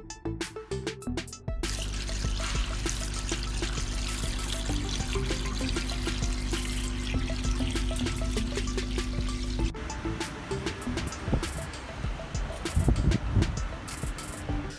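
Pressure washer running with its jet spraying into an oily engine sump: a steady rush of water over a motor hum. It starts about a second and a half in and cuts off abruptly near ten seconds, with background music with a beat around it.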